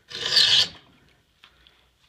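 A saw file drawn once across the steel teeth of a Disston hand saw: one short metal rasp of about half a second, filing the last tooth, followed by a few faint ticks.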